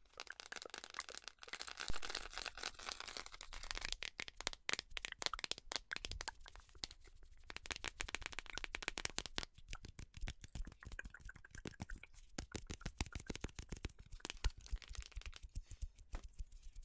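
Rapid crackling and clicking of a small red plastic container and its packaging being handled close to the microphone, dense and irregular, with brief lulls.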